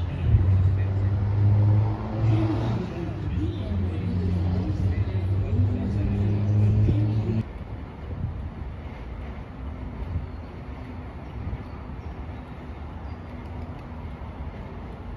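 Diesel engine of a parked fire engine idling with a steady low rumble. About seven seconds in the sound cuts off abruptly to a quieter, rougher low engine rumble.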